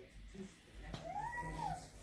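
A baby's single high-pitched vocalization, a coo or squeal that rises and then falls in pitch for under a second, starting about a second in.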